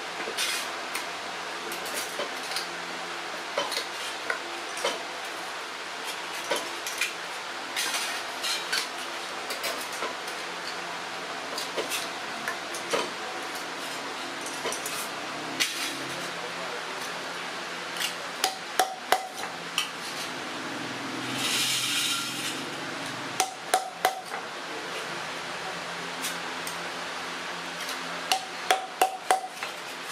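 Light metal clinks and rattles from handling thin tin strips, then, in the second half, three short runs of three to five sharp hammer strikes on metal over a steel stake, with a brief scraping rustle between them. A steady background noise runs underneath.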